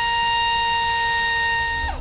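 Small brushless drone motor spinning a Gemfan 4024 propeller on a thrust stand, giving a steady high-pitched whine at a fixed throttle step. Near the end the pitch falls quickly as the motor spools down.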